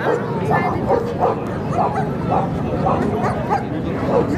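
A dog barking in a steady run of short barks, a little under two a second, over background voices.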